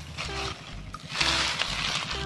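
Rustling of dry leaf litter as someone moves through the garden, strongest from just over a second in, over faint background music.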